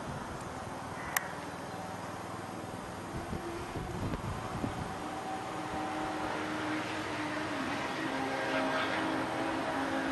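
Outdoor background noise: a steady hiss with a faint low hum joining in the second half, and a single sharp click about a second in.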